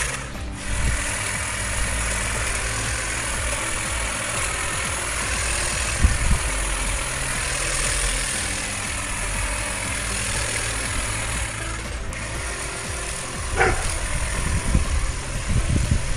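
A cordless 18-volt electric hedge trimmer running steadily, its reciprocating blades cutting through leafy hedge branches, with background music underneath.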